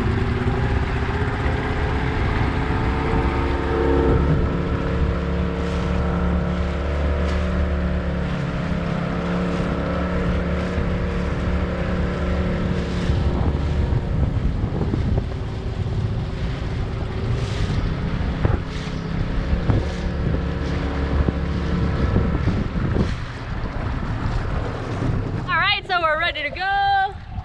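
Small Mercury outboard motor running on an inflatable dinghy under way, with water rushing along the hull and wind on the microphone. The engine note changes about halfway through.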